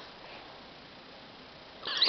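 Mostly quiet room, then a dachshund's brief high-pitched whine near the end.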